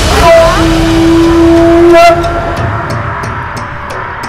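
Dramatic film-score hit: a sudden loud crash opens into a held high note that lasts about two seconds and breaks off. A lower, quieter rumbling drone follows.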